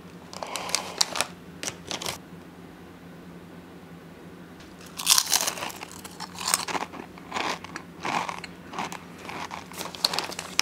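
Crisp fried chicken skin crunching as it is bitten and chewed, an irregular run of crunches from about halfway through. Near the start, brief rustling of the foil-lined snack bag.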